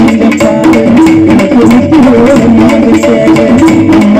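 Live Tamil folk band music: a keyboard melody moving in short steps over steady drum beats.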